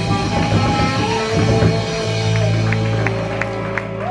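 Live band playing amplified music through PA speakers, settling into a long held chord about halfway through.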